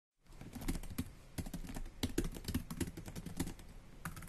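Computer keyboard typing: irregular keystroke clicks, several a second, fitting a typed-out text reveal.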